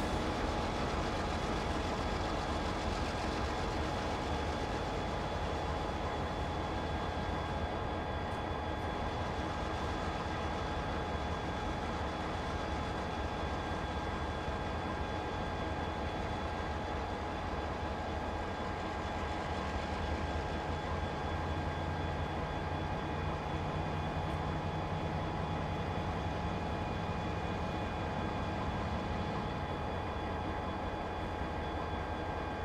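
Diesel locomotive running steadily while moving freight cars: a continuous low rumble with steady whining tones over it, and a deeper engine note coming in about two-thirds of the way through.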